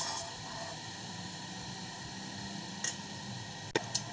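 Steady low background hiss with no speech, then one sharp click near the end.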